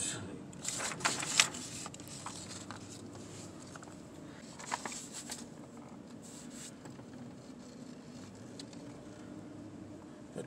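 Scattered rustles and clicks of fingers handling a phone, loudest about a second in and again near the middle, over a faint steady low hum inside a slowly moving car.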